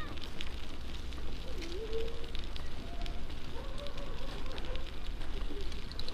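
Bicycle ridden along a wet asphalt road: a steady low wind rumble on the microphone with tyre hiss and scattered small clicks and rattles from the bike.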